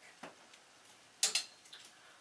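Clothes hangers clicking on a metal clothes rail as a garment is taken down: a faint click near the start, then a short cluster of sharp clicks just over a second in.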